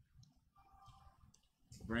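A few faint, scattered clicks in a quiet room, then a man's voice begins near the end.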